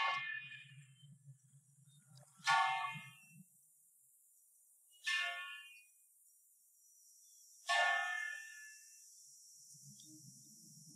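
Church bells struck singly: four separate strokes about two and a half seconds apart, each ringing out and fading before the next.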